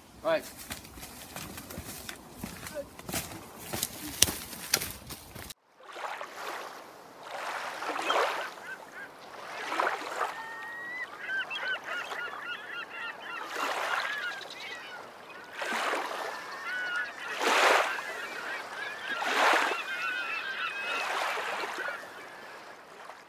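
Crackling and snapping of feet moving through dry leaves and twigs in brush. This cuts abruptly to small waves washing onto a sandy shore in swells about every two seconds, with repeated honking bird calls from about ten seconds in.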